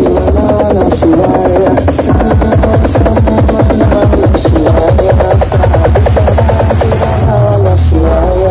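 Very loud electronic dance music blasting from a huge carnival sound system, with heavy bass and a fast, dense beat under a melody line. Near the end the bass falls in a downward sweep.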